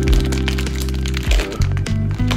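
Background music with sustained low chords, over sharp crinkling and crackling of a plastic poly mailer bag being handled for cutting.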